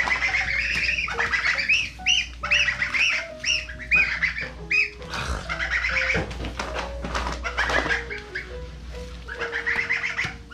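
Young goslings peeping, many short high calls in quick succession, some overlapping, with soft background music under them.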